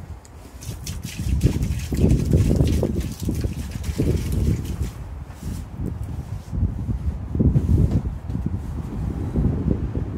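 Wind buffeting the microphone: an uneven low rumble that swells and fades in gusts.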